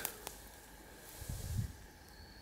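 Quiet outdoor ambience with one faint click just after the start and a brief low rumble around the middle, while a recurve bow is held at full draw.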